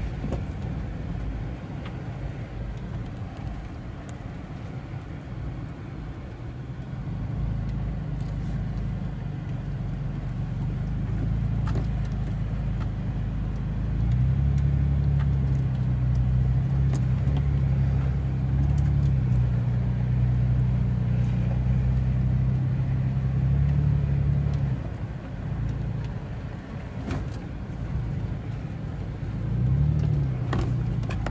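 A vehicle engine droning low, heard from inside the cabin on a dirt trail. It gets louder and holds a steadier pitch for about ten seconds in the middle, as if pulling up a rise, with occasional knocks and rattles over the rough track.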